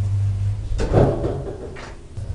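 Old DEVE hydraulic freight elevator: the steady low hum of its hydraulic pump runs and stops a little under a second in with a loud clunk. A softer scrape follows near the end.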